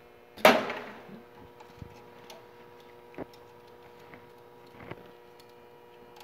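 MIG welding wire being pulled back out of the welder's wire feeder and wound onto its spool by hand. A sharp metallic snap comes about half a second in and rings briefly, then a few faint light clicks follow over a steady hum.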